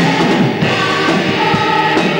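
Music with a choir singing long held notes.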